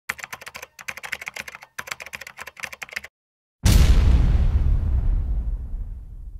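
Intro sound effects: three quick runs of keyboard typing clicks, a short silence, then a sudden deep boom about three and a half seconds in that slowly dies away.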